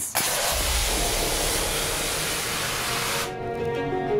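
A loud rushing hiss with a low rumble under it, set off by the ceremonial launch buzzer; it lasts about three seconds and cuts off suddenly as music starts.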